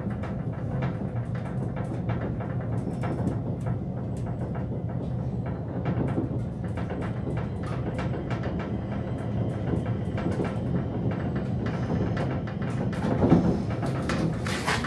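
Elevator car travelling in its shaft: a steady low hum with light ticking and rattling, then a louder thump near the end as the car comes to a stop at the landing.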